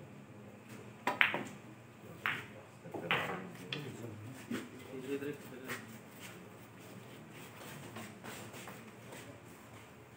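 Pool balls clicking against each other and the cue during a 10-ball shot. A loud cluster of sharp clicks comes about a second in, followed by several single clicks over the next few seconds that grow fainter, over a low murmur of voices.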